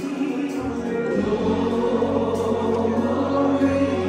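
Gospel worship song sung by a group of voices over sustained keyboard accompaniment, held notes moving slowly and steadily.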